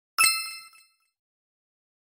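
A single bright metallic ding, an intro chime sound effect, struck once and ringing out for under a second.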